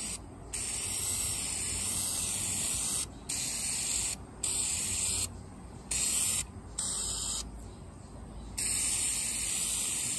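Aerosol spray paint can spraying in about six hissing bursts with short pauses between them, the longest bursts near the start and the end.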